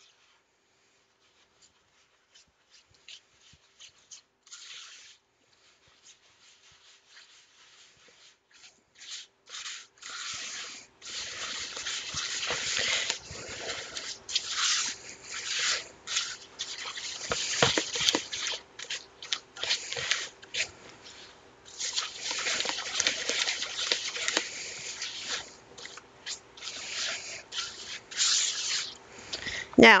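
Silicone spatula stirring sugar, eggs and vanilla in a mixing bowl. It is quiet at first, then from about ten seconds in turns into loud, irregular scraping and rubbing strokes against the bowl as the sugar and eggs are worked into a batter.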